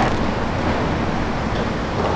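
A steady, even rushing noise with no distinct knocks or tones, the kind made by rain, wind or distant traffic.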